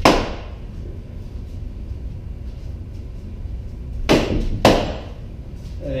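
Rattan sword blows landing on a wrapped wooden pell post: three sharp cracks, one at the start and two about half a second apart around four seconds in.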